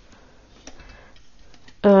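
A few faint light ticks in a quiet room, about half a second apart, then a woman's voice begins speaking just before the end.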